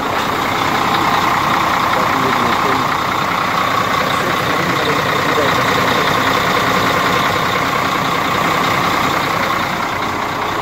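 Heavy truck diesel engine idling steadily close by.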